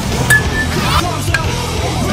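Rock music track with a steady bass line and a few sharp accents.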